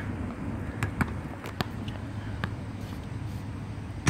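A basketball bouncing on an outdoor hard court, a few short, irregular dribble bounces, over a steady low outdoor rumble.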